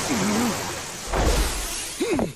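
Anime fight sound effects: a loud rushing whoosh with a deep boom a little past halfway, and a short wavering cry near the start.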